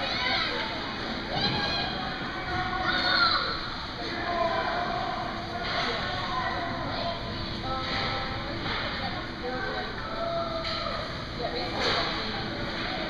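Indistinct voices of young children chattering and calling out across an indoor ice rink, with no clear words.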